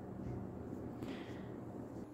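Faint rustling of a crocheted T-shirt-yarn bag being handled and positioned, over low room noise.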